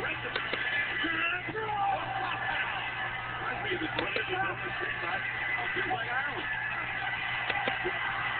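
Wrestling TV broadcast sound: voices over arena crowd noise and a steady low hum. A few sharp knocks come near the start, about halfway through and near the end.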